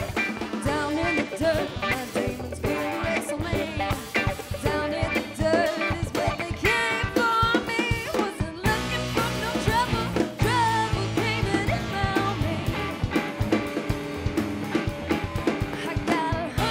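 Live rock band playing: a woman sings lead over electric guitar, bass guitar and a drum kit. About halfway through, the bass and drums come in fuller and heavier.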